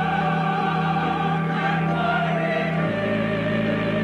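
Choir singing a long held chord, one voice with vibrato carrying the top line, over steady, unwavering low tones from the Moog modular synthesizer; the chord shifts about three seconds in.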